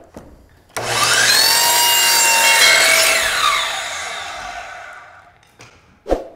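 DeWalt miter saw starting about a second in and cutting a 45-degree angle through a wooden baseboard, then spinning down with a falling whine that fades out over the next few seconds.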